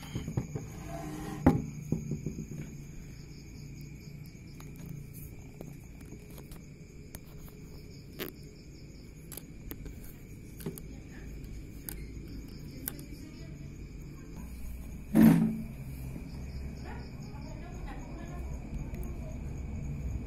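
Crickets chirping steadily in a night chorus, over scattered light clicks and taps of wooden popsicle sticks being handled and scraped on a table, with one louder knock about fifteen seconds in.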